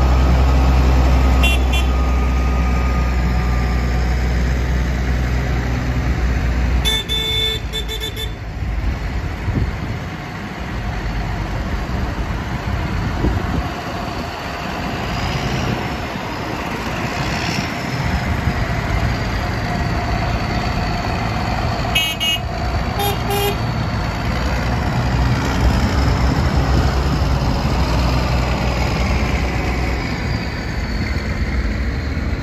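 A convoy of tractors passing close by on a wet road: heavy diesel engines running and tyres hissing on the wet surface, the engine rumble loudest at first. Short horn toots sound about seven seconds in, then twice more in quick succession a little past twenty-two seconds.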